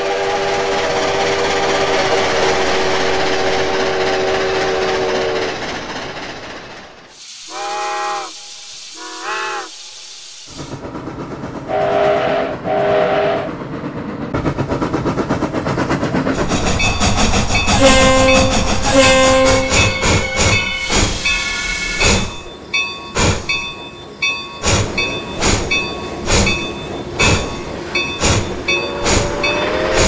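Steam locomotive chime whistle held for about five seconds, then two short blasts that bend in pitch and two more short blasts. From about halfway, the locomotive works hard with rapid exhaust beats under more whistle notes, settling into an even rhythm of sharp beats. The chime whistle sounds again near the end.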